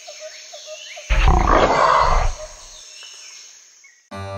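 A tiger's roar: one loud roar starting about a second in and lasting about a second, over a jungle background of steadily repeating chirps and bird calls.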